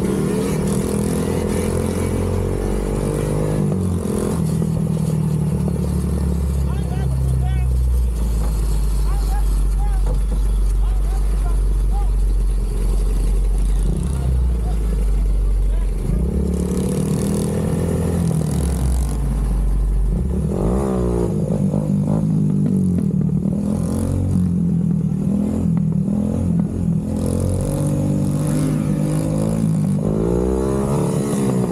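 ATV and dirt bike engines running and revving during a group street ride, the engine pitch climbing under throttle several times, notably about halfway through and near the end.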